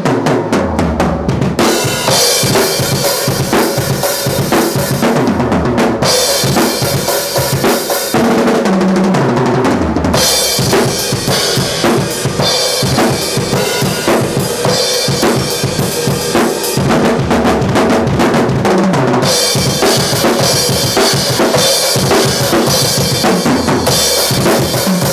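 A PDP Concept Maple seven-piece drum kit played hard and fast, with kick, snare and cymbals going throughout. The cymbals drop out briefly a few times for fills that step down in pitch around the toms. The heads are new and not yet broken in.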